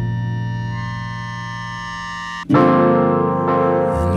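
Instrumental music on keyboard: a held chord fades slowly, then breaks off about two and a half seconds in as a new, louder chord comes in.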